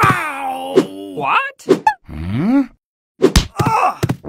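Cartoon sound effects for an animated gorilla: a vocal sound sliding up and down in pitch, broken by several sharp hits, the thuds of apples landing beside it.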